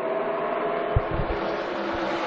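A pack of NASCAR Cup cars at full throttle on a restart, their V8 engines blending into a steady multi-toned drone. A brief low thump comes about halfway through.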